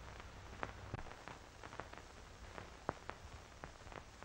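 Faint, irregular clicks and crackle over a low steady hum: the surface noise of an old optical film soundtrack during a silent stretch.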